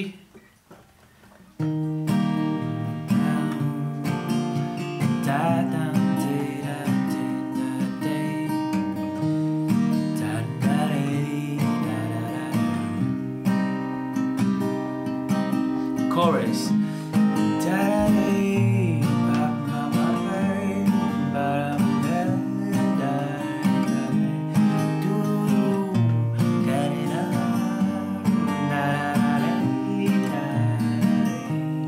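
Crafter cutaway acoustic guitar, capoed at the third fret, strummed in a steady rhythm with a man singing the melody over it. The playing starts about a second and a half in, after a brief pause.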